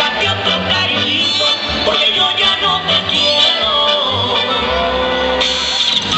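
Loud duranguense band music played over a concert PA, with a bass line stepping from note to note under a melody line; the sound grows fuller and brighter near the end.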